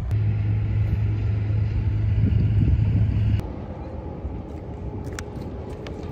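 Outdoor background with a steady low rumble that cuts off abruptly about three and a half seconds in. After that comes a quieter open-air background with a few small sharp clicks near the end.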